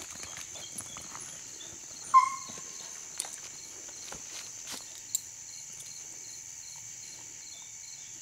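Steady high-pitched drone of crickets and other night insects. About two seconds in comes one short, high call, typical of a young hound's yelp, followed by a few scattered clicks and rustles of footsteps.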